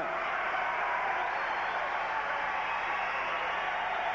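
Arena crowd noise: a steady wash of many voices shouting from the stands, with no single voice standing out.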